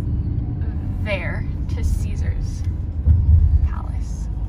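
Steady low rumble of a car driving, heard from inside the cabin, swelling a little about three seconds in. A short bit of a voice comes about a second in.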